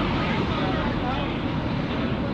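Busy city street ambience: a steady rumble of traffic, with faint chatter from passers-by.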